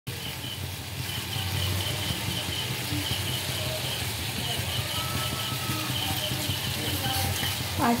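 A little water heating in an aluminium wok over a gas burner: a steady hiss and low burner rumble, with faint sizzling from the small bubbles. Short high chirps repeat faintly in the background.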